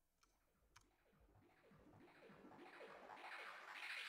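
Near silence, broken by a single faint click under a second in; a faint sound slowly grows in the second half.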